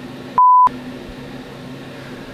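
A short, steady 1 kHz test-tone beep lasting about a third of a second, starting just under half a second in and cut in with dead silence on either side. After it comes faint room tone.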